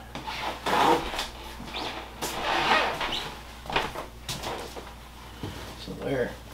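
A scoop scraping and rustling through dry bark-chip substrate in a snake enclosure as waste is dug out, in a series of short separate scrapes.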